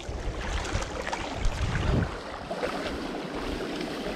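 Water swishing and sloshing as people wade and pull a large hand seine net through a shallow channel, with wind rumbling on the microphone.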